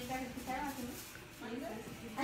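Faint, quiet speech: a woman's voice in a small room, with no other clear sound.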